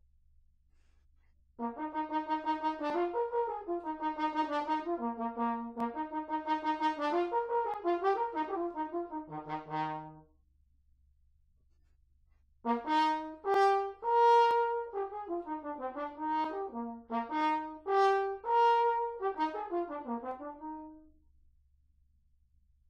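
Alexander Model 90 single B-flat French horn with a stopping valve, played solo with no accompaniment. It plays two phrases separated by a pause of about two seconds: the first a run of quick, separately tongued notes, the second with a few longer held notes.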